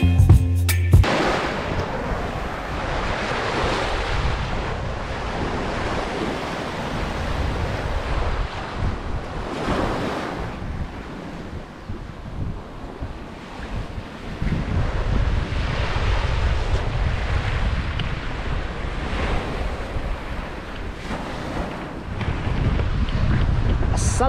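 Small waves washing onto a sandy beach, with gusty wind buffeting the microphone. The sound rises and falls several times.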